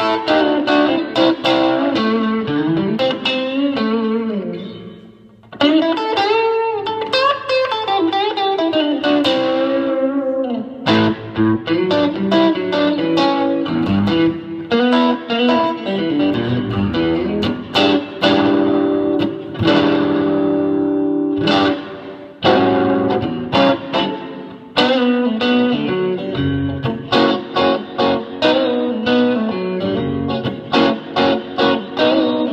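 Electric guitar with two P90 pickups played straight into a 1965 Silvertone 1481 tube amplifier, stock with its original tubes: chords and single-note lines, the notes ringing out in the large room's natural reverb. The playing dies away about four seconds in, picks up again, and turns to quick rhythmic chopped strums near the end.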